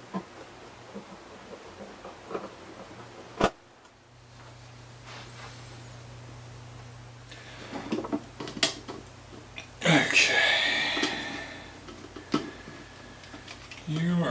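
Light clicks and taps of a guitar pickup and its mounting ring being handled and fitted into a hollowbody's top, with a sharp click a few seconds in and a louder scratchy rustle about ten seconds in.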